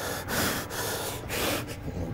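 A man breathing hard in quick, noisy breaths, about two a second, winded after a set of bent-over rows with his heart rate up.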